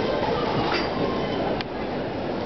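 Steady, echoing background noise of a busy airport terminal hall, with a single sharp click about one and a half seconds in.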